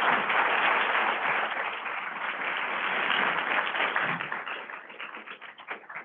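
Audience applauding, the clapping thinning and dying away over the last couple of seconds.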